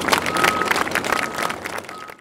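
Audience applauding, many hands clapping irregularly and fading out near the end.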